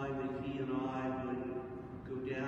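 A man's voice intoning in long, drawn-out, chant-like phrases over steady sustained low tones, heavily reverberant in a large church.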